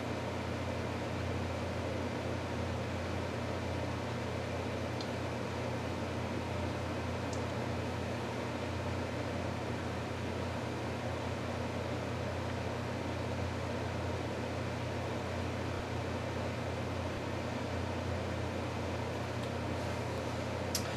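Steady low mechanical hum with an even hiss, unchanging throughout.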